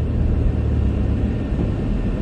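Low, steady rumble of a car engine idling, heard from inside the cabin of the stationary car.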